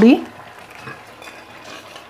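Rice, sweet corn and water simmering in an open aluminium pressure cooker on a gas burner: a low, steady hiss.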